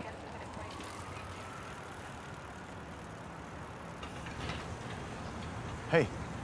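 Steady outdoor street ambience with a faint tone rising in the first couple of seconds, then a brief, loud, sudden sound right at the end.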